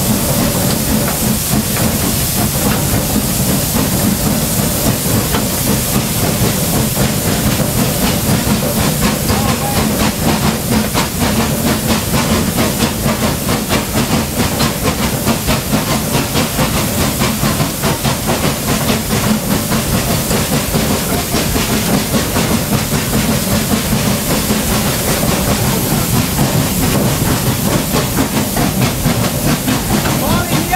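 Cab of a 1945 Davenport-built 900 mm gauge steam locomotive under way: a steady, loud hiss of steam over the running noise of the engine and its train.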